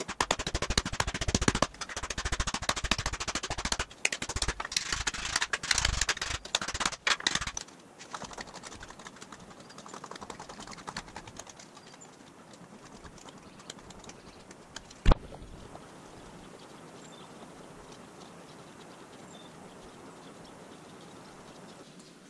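Fast run of blows from an ipe-wood mallet on a thin aluminium sheet laid over a sandbag, hammering it into a dome, for about eight seconds. Then a quieter, uneven rolling as the sheet is worked through an English wheel, with one sharp knock about fifteen seconds in.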